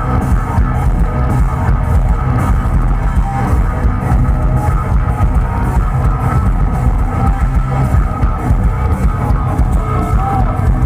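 A metal band playing live at full volume, heard from within the crowd: distorted electric guitars over bass and drums in a steady, driving beat.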